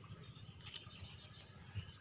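Faint, steady high-pitched chirring of crickets or other insects, with a single sharp click a little under a second in.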